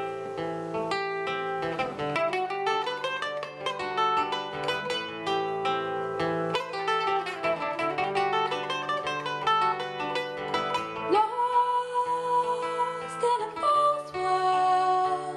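Acoustic guitar and mandolin playing a folk song's instrumental introduction together, a steady stream of picked notes running up and down. A long held note comes in near the end.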